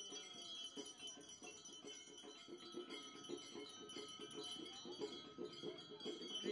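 Faint ringing of bells and chimes, with music or chanting running beneath it.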